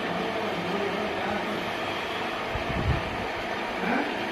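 A steady, even whooshing noise with a faint low hum underneath.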